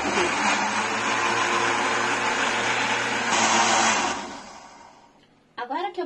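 Countertop electric blender running, mixing a pale liquid of sugar, melted margarine, salt and milk. It runs steadily, gets louder about three seconds in, then is switched off about four seconds in and winds down over about a second.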